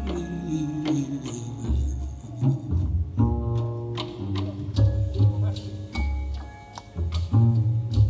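Live jazz instrumental: grand piano chords over deep double bass notes, with light cymbal ticks from the drum kit.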